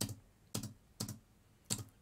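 Computer keyboard keys pressed four times in about two seconds, as separate sharp clicks, paging through a document.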